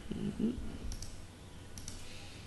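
Computer mouse clicks: a pair of short sharp clicks about a second in and another couple near the end.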